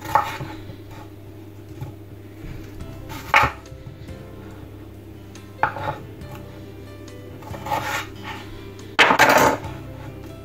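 Kitchen knife chopping peeled potatoes into chunks on a wooden cutting board: single sharp chops every couple of seconds, with a longer, louder clatter about nine seconds in.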